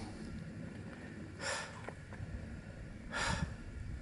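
A hiker breathing near the microphone: two audible breaths, about a second and a half in and again about three seconds in.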